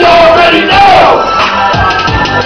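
A loud hip hop beat through a club PA, with a voice shouting long drawn-out calls over it and the crowd yelling.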